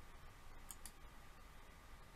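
Near silence with two faint, quick clicks close together about two-thirds of a second in: a computer mouse button clicked to advance the presentation slide.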